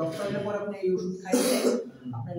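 A man's voice, then a man clearing his throat: a short, harsh, noisy burst about one and a half seconds in.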